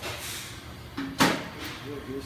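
A single sharp knock a little past a second in, the loudest sound, with light handling noise around it.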